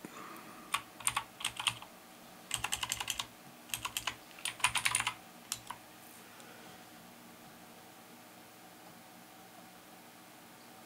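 Computer keyboard typing: a few separate keystrokes, then quick runs of keys, stopping about six seconds in.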